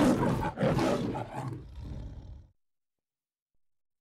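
The MGM logo lion roar: a lion roaring twice, the second roar trailing off into weaker growls that stop about two and a half seconds in.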